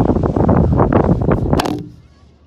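Loud, gusty wind buffeting the phone's microphone on open lake ice. Near the end comes a brief rustle of the phone being handled, and then the sound cuts off sharply.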